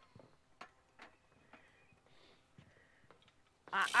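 A few faint, scattered clicks and knocks from hanging gear being readied over a hog carcass on a wooden deck. A voice starts near the end.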